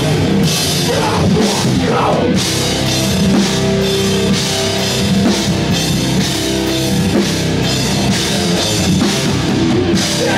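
A live heavy rock band playing loud, with a drum kit and distorted guitar, recorded from within the crowd.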